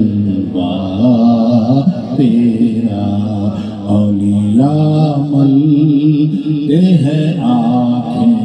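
A devotional naat sung as a chant: one voice draws out long melodic, gliding notes over a steady held low drone.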